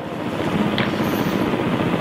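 Steady rushing background noise with a faint low hum, without speech.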